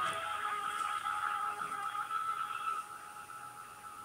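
Telephone hold music heard through a phone's speaker, thin and narrow in tone, fading away about three seconds in.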